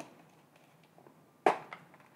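Soft scrapes of a table knife spreading butter on toast, with one sharp knock about one and a half seconds in.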